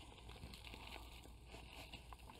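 Faint crackling and crinkling of a flexible black plastic nursery pot being worked off a plant's root ball.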